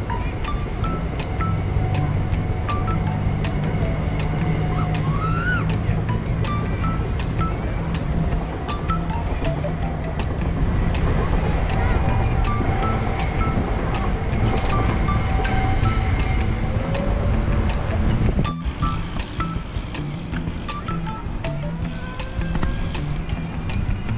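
Background music with a steady beat and a stepping bass line.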